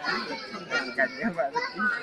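Children's voices talking and calling out over one another, with a high-pitched call near the end.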